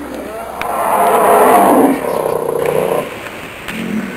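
A loud, rough creature roar that builds over about a second, peaks and cuts off about three seconds in.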